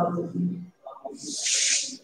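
A woman's drawn-out hesitant 'uh', then near the end a single long hiss lasting under a second.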